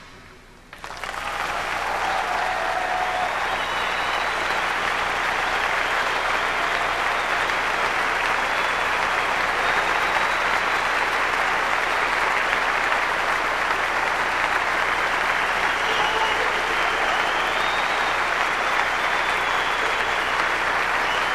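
Audience applause that breaks out about a second in, right after a drum and percussion solo ends, and holds steady, with a few cheers over the clapping.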